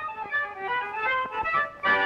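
Early-1930s cartoon score music: a light run of short, separate notes, broken by a brief dip and then a loud held chord near the end.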